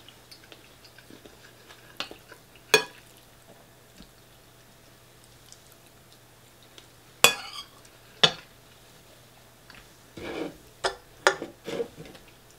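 Metal cutlery clinking and scraping against a ceramic bowl as food is scooped up: a few sharp, spaced-out clinks, then a quick cluster of knocks and a short scrape near the end as the utensil is set down in the bowl.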